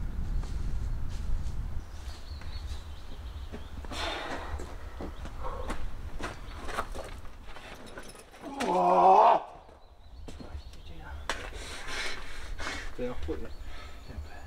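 A climber's loud pitched shout, lasting about a second, partway through a hard move on the boulder, with scattered scuffs and knocks around it and a low rumble in the first couple of seconds.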